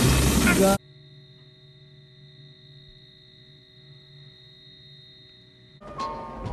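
A loud film soundtrack cuts off abruptly under a second in, leaving about five seconds of faint, steady electrical hum with several fixed tones. New sound comes in just before the end.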